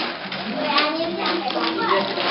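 Children's voices talking and calling out over one another.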